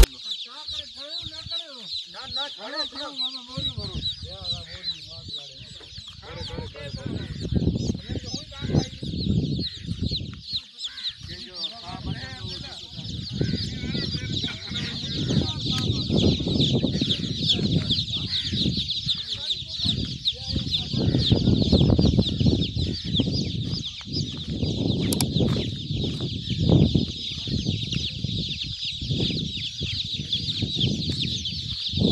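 A large flock of newly hatched chicks peeping all at once: a dense, continuous chorus of high-pitched cheeps. A low rumble runs underneath from about four seconds in.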